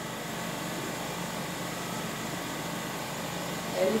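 Steady background hum and hiss of machinery running, with no distinct knocks or events; a woman's voice starts right at the end.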